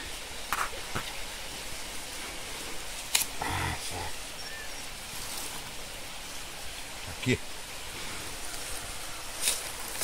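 A gloved hand scraping and digging in loose forest soil, giving a few faint scrapes and knocks over a steady background hiss.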